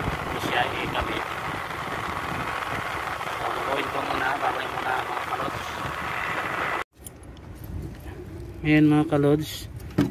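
Window-type air conditioner running, its fan and compressor making a steady noise; its faulty thermostat keeps it from cycling off, so the coil ices over. The sound cuts off suddenly about seven seconds in, and a brief voice is heard near the end.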